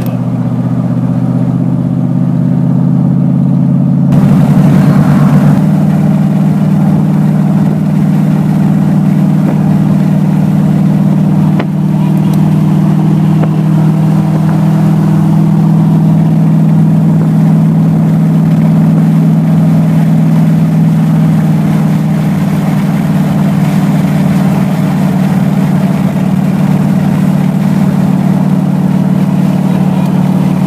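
A car engine running at steady highway speed, heard from inside the cabin with wind and road noise. About four seconds in, the engine note shifts and grows louder, then holds steady.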